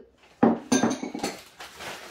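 Pink stoneware mini bowls clinking as they are handled and set down: one sharp knock about half a second in, then several quicker clinks.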